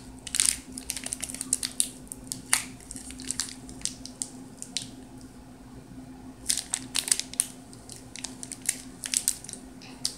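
Crinkling and crackling of a thin plastic tube of coloured sand being squeezed and worked to push the sand out into a small plastic sand-art bottle. The crackles come in clusters, with a quieter stretch in the middle, over a faint steady hum.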